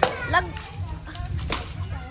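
Excited shouting of "mummy" and playful voices, with two sharp cracks about a second and a half apart, which fit a twisted-cloth kolda whip striking.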